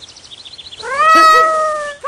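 Sound effect of TikTok's 'Leon the Kitten' gift animation: light tinkling sparkles, then, just under a second in, one long, loud kitten meow that rises and holds for about a second before easing off.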